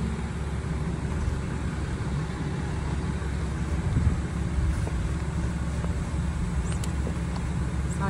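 Steady low rumble of an idling heavy diesel engine, with a brief knock about four seconds in.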